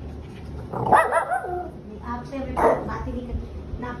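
Shih Tzu barking back: a drawn-out bark that falls in pitch about a second in, then a shorter bark a little before the three-second mark.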